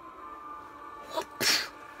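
A single sneeze about a second and a half in, short and sharp, over a faint steady hum.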